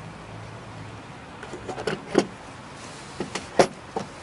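Hard plastic clicks and knocks as a DeWalt DE0892 laser detector is handled and lifted out of its moulded plastic carry case: a short cluster about two seconds in and another, with the loudest knock, near the end.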